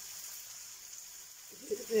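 Steady background hiss with a faint high-pitched whine, then a person starts speaking near the end.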